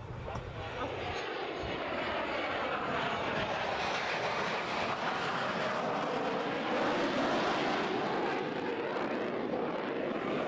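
Jet aircraft engine noise as a tailless jet drone rolls along a runway. It comes in about a second in and swells toward the end with a sweeping whoosh as the aircraft passes.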